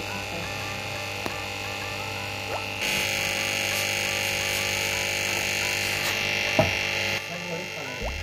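Aquarium air pump and filter humming steadily, with bubbling water. A louder hiss joins about three seconds in and stops about seven seconds in.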